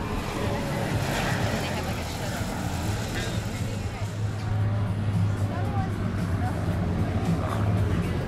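Light piston propeller aircraft engines droning steadily, a little louder in the second half, with people talking faintly in the background.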